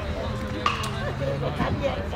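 Voices of players and spectators calling out around a baseball field, one drawn-out call slowly falling in pitch, with a single sharp knock a little over half a second in.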